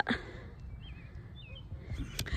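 A small bird chirping twice, two short warbling calls under a second apart, faint over steady low outdoor background noise.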